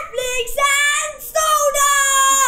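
A child's voice singing high, drawn-out notes, stepping up once to a longer held note.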